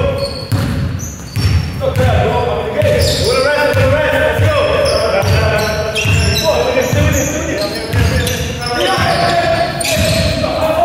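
Basketball dribbled on a wooden sports-hall floor, a steady run of low thumps about one and a half a second, echoing in the large hall. Short gliding squeaks, typical of trainers on the court, come and go over the thumps.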